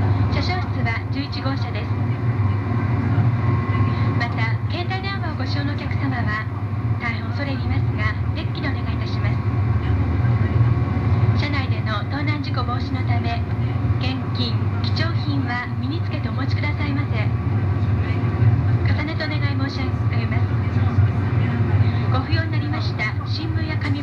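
Interior running noise of a 200 series Tohoku Shinkansen car at speed: a steady, loud low rumble, with indistinct speech over it.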